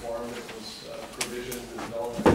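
Speech only: people talking in a meeting room, too indistinct for the words to be made out.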